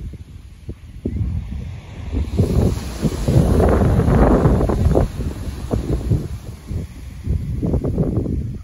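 Wind buffeting the phone's microphone over the surf, with a wave breaking on a stony beach and swelling loudest around the middle, then easing off before another surge near the end.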